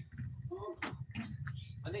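Night insects, most likely crickets, chirring steadily and faintly in the background, with a low hum and faint voices.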